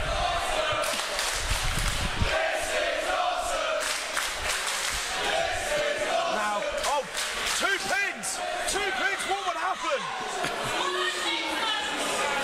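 Wrestling crowd in a hall clapping and shouting, with heavy thuds in the first two seconds. A rhythmic chant of several voices comes in the second half.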